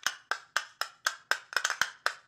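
A percussion loop sample previewed from FL Studio's sample browser: short, dry, wood-block-like hits at about four a second, with a quick flurry of extra hits in the middle.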